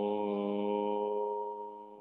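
A voice chanting one long, steady mantra note, held level and fading out over the last half second.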